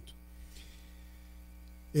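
Faint, steady electrical mains hum with no speech over it.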